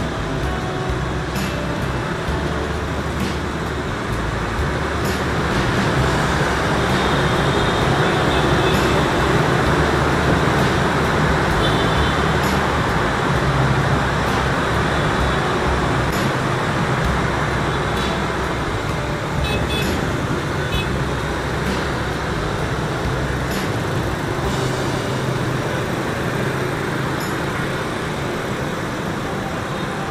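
Dense scooter and motorbike traffic heard from a moving motorbike: a steady mix of small engines and road noise. It grows louder from about six seconds in as the ride passes through a road underpass, and eases again after about fourteen seconds.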